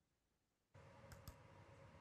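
Near silence: a dead gap, then faint room tone with two faint clicks a little after a second in.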